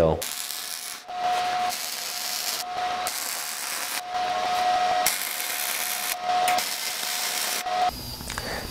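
MIG welder laying short welds on mild steel angle iron, run right over the mill scale: a crackling, frying hiss in about five runs, each one or two seconds long, broken by brief pauses as the arc stops and restarts, with a steady tone in some stretches.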